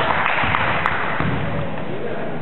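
Echoing noise of a basketball game in an indoor hall: players' voices and several short sharp knocks, such as a ball striking the wooden floor, in the first second and a half.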